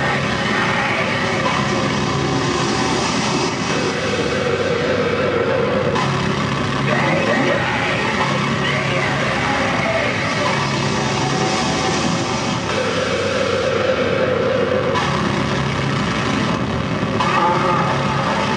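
Loud live electronic noise performance: a dense, unbroken wall of distorted noise over a low hum that drops out and comes back every few seconds, with shifting mid-range drones and no beat.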